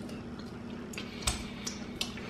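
A few faint wet mouth clicks and lip smacks in the second half, from chewing a roasted seaweed snack and licking the fingers, over a low steady hum.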